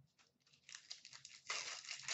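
A trading card pack's wrapper crinkling as it is torn open. The crinkling starts about half a second in, and the loudest tearing comes near the end.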